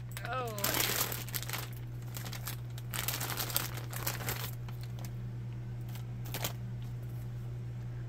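Clear plastic packaging bag being pulled open and crumpled by hand, crinkling in irregular bursts that die away after about four and a half seconds.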